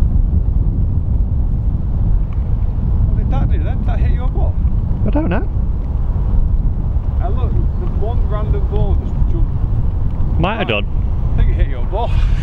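Wind buffeting the microphone: a loud, steady low rumble. Short bits of men's voices break through now and then, the loudest about a second before the end.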